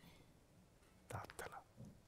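Near silence, then a few short, soft voice sounds from a man about a second in.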